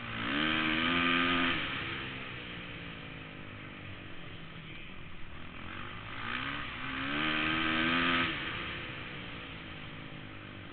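A Kawasaki 450 flat-track motorcycle engine, heard close up from a helmet camera, twice revving up hard and then easing off. The first run comes right at the start and the second about six seconds later. Each time the pitch climbs, holds high for about a second, then drops away as the throttle closes, with a lower engine drone in between.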